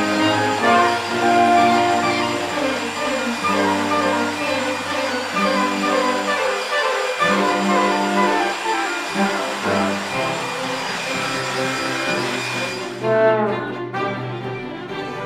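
Orchestral background music led by brass, over the steady rushing of an electric blower used to blow-dry hair. The blower cuts off about a second before the end.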